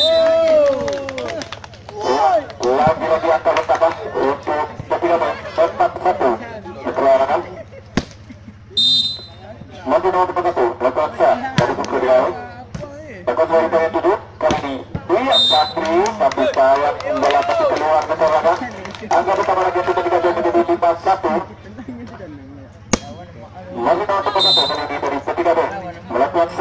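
A man's voice in long loud stretches, with a steady low hum underneath and a few sharp knocks between the stretches.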